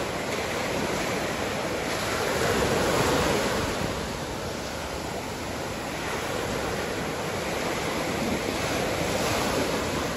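Small ocean waves breaking and washing up the beach, a steady rushing surf that swells twice, about three seconds in and again near the end.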